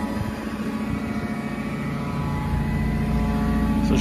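Gasoline engine of a Broderson IC-80 carry deck crane running steadily, getting louder and heavier about two and a half seconds in.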